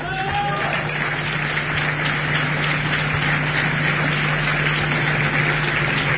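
Audience applauding steadily and loudly, with a steady low hum underneath.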